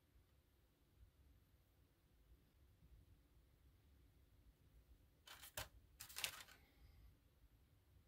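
Near silence, broken a little over five seconds in by two brief rustling handling noises about half a second apart.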